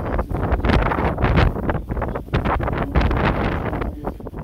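Wind blowing across an open microphone: a loud rumbling noise that surges and drops irregularly in gusts.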